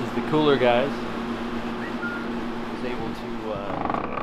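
Steady hum of a walk-in meat cooler's refrigeration unit. A short voice-like sound comes about half a second in.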